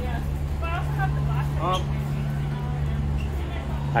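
Steady low machine hum, with faint voices of other people in the background during the first half.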